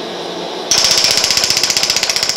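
Er:YAG dental laser with a PIPS tip firing pulses into a vial of water at 15 pulses a second: a sudden start about two-thirds of a second in, then a rapid, even train of sharp snaps, strongest in the high range. The snaps are the laser pulses setting off micro-explosions in the water, the photoacoustic effect, which is described as violent.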